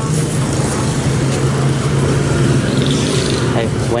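Busy street ambience dominated by a steady, low engine hum, with faint background voices.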